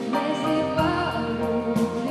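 A woman singing a song into a microphone over instrumental backing, her voice sliding and wavering on held notes.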